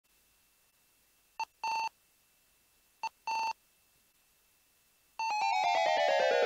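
Electronic intro jingle: two pairs of clean beeps, each a short blip followed by a longer tone, about a second and a half apart. About five seconds in, a rapid run of stepped electronic tones starts the theme music.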